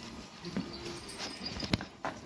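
Water buffalo being led on a rope: scattered footfalls and knocks, with a few sharp clicks, the sharpest near the end, and a brief low sound about half a second in.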